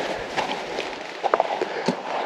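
Footsteps on a dry, gravelly dirt path, a scatter of small crunching clicks.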